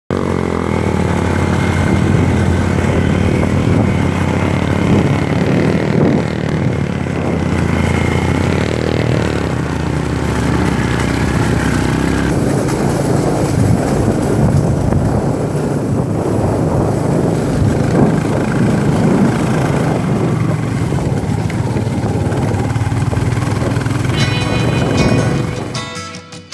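Motorcycle engine running steadily under a rough low rumble while riding along an unpaved mountain road. The sound drops away just before the end.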